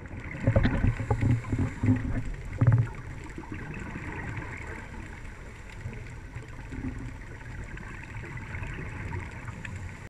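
Scuba divers' regulator exhaust bubbles gurgling, heard underwater through the camera housing: a run of irregular bubble bursts in the first three seconds, then a steady low wash of water noise.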